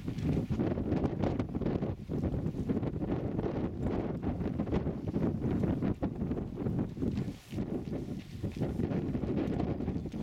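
Wind buffeting the microphone: a gusty low rumble that eases briefly about three quarters of the way through.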